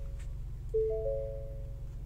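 Ford Expedition dashboard chime at start-up: a three-note tone stepping up in pitch, sounding twice about a second and a half apart, over a low steady hum.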